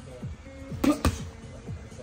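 Background music with a deep, repeating bass beat, and two quick smacks of boxing gloves meeting about a second in, a jab and its parry.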